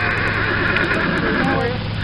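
A horse whinnying: one long, wavering, high call that ends near the end.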